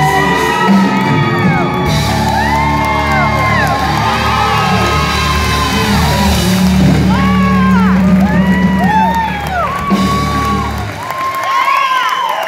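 A live band with acoustic guitar and electric bass plays out the end of a country song, its low held notes stopping about a second before the end. Over it the audience whoops and cheers, many voices overlapping.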